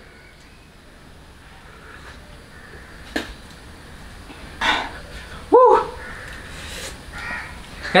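A person sipping coffee from a paper cup, with a short slurping rush of air about halfway through. Just after it comes a brief voiced sound of reaction from the drinker, the loudest thing here. There is a light click a few seconds in, over a low steady room hiss.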